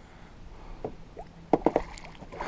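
Lake water splashing beside a boat as a large wiper (hybrid striped bass) is held in the water and released, with a few short, sharp splashes near the end.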